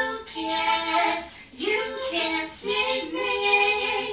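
A high voice singing held notes that slide up into pitch, in four short phrases separated by brief breaks.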